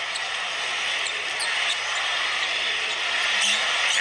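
Basketball arena crowd noise, steady and growing slightly louder, with a basketball being dribbled on the hardwood court.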